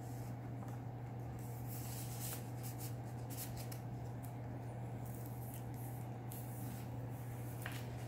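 Paper and card rustling and crackling in irregular short bursts as a handmade paper journal is handled, a card insert tucked into its pocket and a page turned, over a steady low hum.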